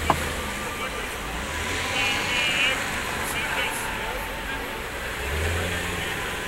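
Busy city street ambience: road traffic running with voices of passers-by in the background. A single sharp click comes right at the start, and a brief wavering high-pitched sound comes about two seconds in.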